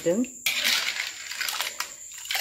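A metal ladle scraping and clinking against a metal kadai while stirring a thick curry. There is a stretch of scraping about half a second in, then a few sharp clinks near the end.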